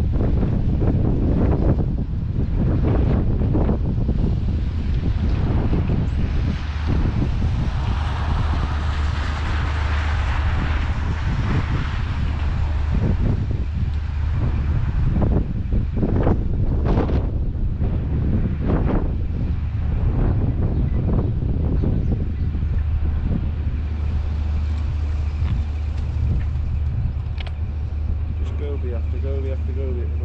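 Strong gusty wind buffeting the microphone: a constant heavy low rumble, with louder hissing gusts swelling in and out, the biggest about a third of the way in.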